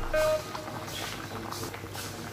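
Water boiling hard around cubed potatoes in an open pan, a steady bubbling, with a brief single tone at the very start.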